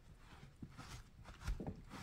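Faint rubbing of a cloth rag wiping the wet leather of a catcher's mitt, with a few soft knocks, the loudest about a second and a half in.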